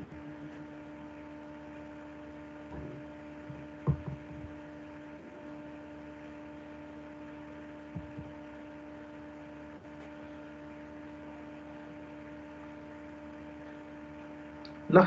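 Steady electrical hum with a few faint short knocks.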